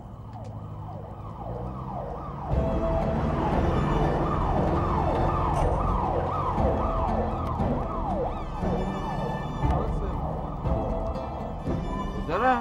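Ambulance siren sounding in quick, repeated falling sweeps, about two to three a second. It grows louder over the first couple of seconds as it approaches, then stays loud over a low rumble.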